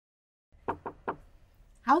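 Three quick knuckle knocks on a wooden door: a housekeeper knocking before announcing herself.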